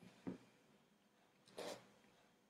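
Near silence with two brief faint handling noises: a soft knock, then a short rustle.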